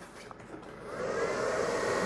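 ProLong battery discharger powering up, its cooling fan spinning up about half a second in into a steady whir with a faint rising whine.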